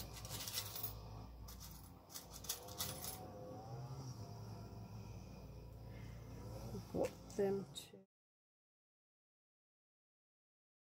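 Quiet handling of paper and a small metal craft fastener, with a few light clicks and rustles over a low hum. There is a brief wordless vocal sound near the end, then the sound cuts off abruptly.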